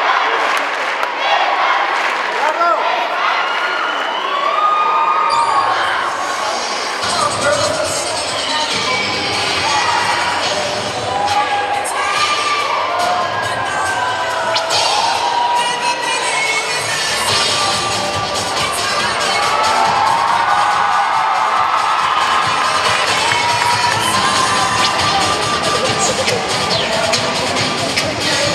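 A children's cheer squad shouting and chanting together while performing a routine, with cheering from the audience.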